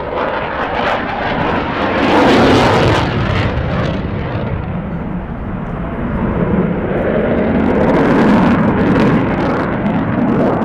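Eurofighter Typhoon's twin Eurojet EJ200 turbofan engines at display power as the jet banks overhead: loud, rushing jet noise that swells about two seconds in and again later as the aircraft passes.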